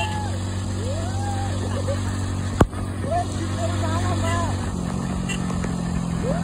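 Motorcycle engine running steadily under its riders, its note shifting higher about five seconds in, with a voice carrying a gliding tune over it. A single sharp click comes about two and a half seconds in.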